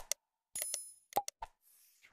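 Animated subscribe-button sound effects: two quick mouse-style clicks, then a short bell ding with a bright ringing, followed by three quick pops and a faint whoosh near the end.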